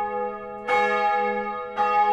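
Bell chimes struck twice, about a second in and again near the end, each ringing on and slowly fading, in a pause between phrases of mandolin-led background music.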